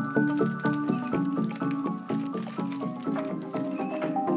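Background music with a quick, regular pattern of short pitched notes.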